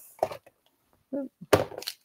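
Craft supplies being handled and set down, with a sharp knock about one and a half seconds in, between brief murmured sounds from the person handling them.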